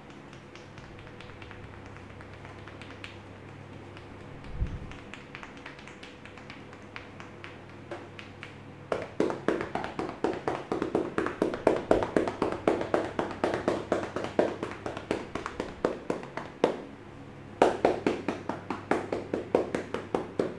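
Tapping massage: a barber's hands, held pressed together, strike rapidly on a client's back and shoulders with quick, sharp claps. It is light and sparse at first, becomes a fast run of strokes about halfway through, pauses briefly and starts again near the end.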